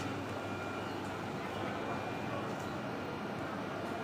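Passenger train's coaches rolling through a station, a steady rolling noise of the train on the track.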